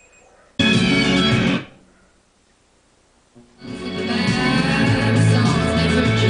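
Radio broadcasts of music played through a hi-fi receiver and speakers, cutting in and out as the tuner changes stations: about a second of one station half a second in, a near-silent muted gap, then a guitar-led song from about three and a half seconds on.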